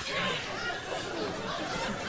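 Speech only: quieter voices of the sketch's actors talking, heard under the louder close-up voice before and after.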